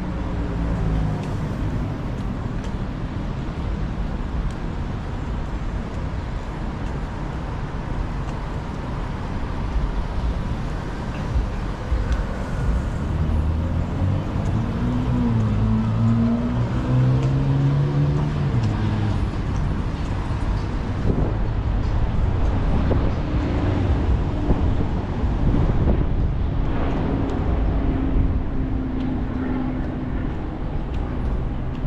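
City street traffic: a steady rumble of cars on the road, with one vehicle's engine note rising and then falling about halfway through, and a steady engine hum near the end.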